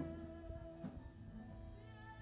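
Live worship band music dying away at the end of a sung phrase: held instrument notes fade out, with a faint wavering vocal note near the end.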